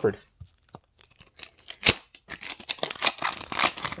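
A foil hockey card pack wrapper being handled and torn open: a sharp crack about two seconds in, then dense crinkling and tearing that grows louder towards the end.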